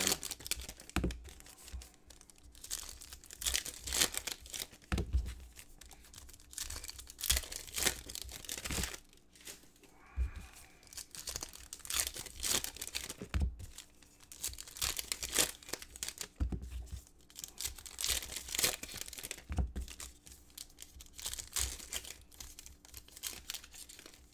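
Foil trading-card pack wrappers being torn open and crinkled by hand, in irregular crackling bursts of tearing and rustling.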